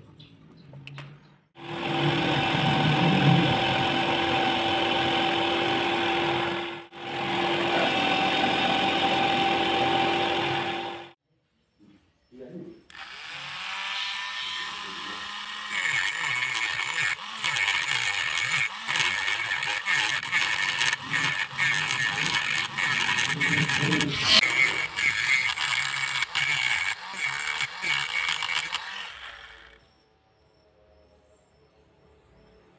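A small power-tool motor runs steadily for about nine seconds with a short break partway, spinning the rotor block on its shaft. After a pause, a mini rotary tool spins up with a rising whine, and its thin cutting disc grinds slots into the rotor block in short, choppy bursts of cutting.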